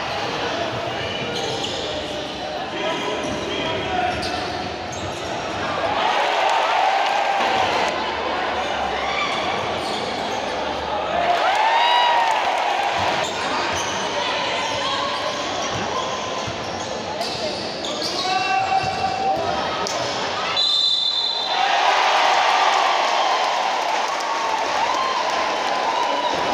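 Indoor basketball game: a ball bouncing on a hardwood court and sneakers giving short squeaks, over the steady chatter of a crowd in the stands, all echoing in the large gym.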